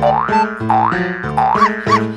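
Playful background music: keyboard chords under a run of springy cartoon 'boing' effects that slide up and down in pitch several times.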